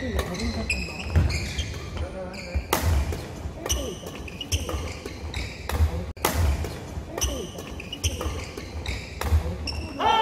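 Badminton doubles rally on a wooden sports-hall floor: sharp racket strikes on the shuttlecock, shoe soles squeaking in short chirps, and dull footfall thuds as the players move.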